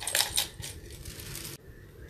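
Small hard objects clicking and clinking together as craft supplies are handled on a desk: a quick run of clicks in the first half second, then a few fainter ones that stop after about a second and a half.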